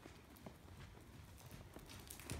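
Faint, steady hoofbeats of an APHA sorrel overo gelding cantering on the soft dirt footing of an indoor arena, about two strikes a second.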